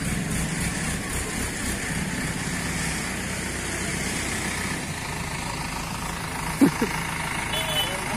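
Diesel engine of an ACE 16XW hydra crane running steadily under load while lifting a heavy wooden boat hull. A brief, sharp sound about six and a half seconds in stands out above the engine.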